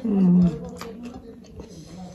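A woman's loud closed-mouth 'mmm' hum while chewing a mouthful, falling slightly in pitch and cut off after about half a second. Faint clicks of eating follow.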